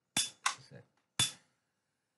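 Pistol-shaped lighter clicked three times as its trigger is pulled to light it. The clicks are sharp and short, two close together and a third under a second later.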